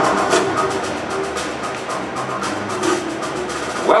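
Trailer soundtrack music with a fast, driving run of percussion hits, played over the hall's speakers.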